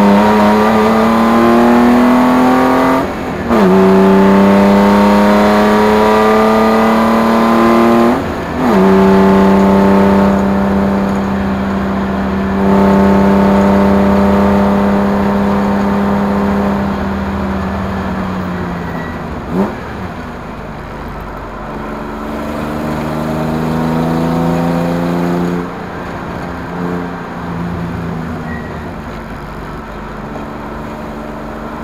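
A race car's engine heard from inside the car under hard acceleration: the pitch climbs through the revs, with upshifts a little after 3 seconds and about 8 seconds in. It then runs steadily, makes another quick gear change about 20 seconds in, and is quieter through the last third.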